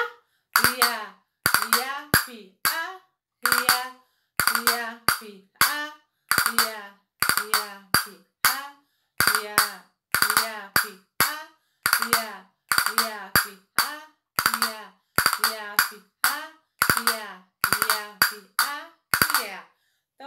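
A woman singing short "ai" syllables in rhythm while playing castanets, their sharp wooden clicks falling between and with the syllables, a new phrase roughly every second.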